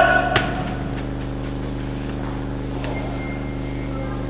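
A steady low electrical hum made of several even, level tones. One sharp knock comes about a third of a second in, and a faint short high beep near three seconds.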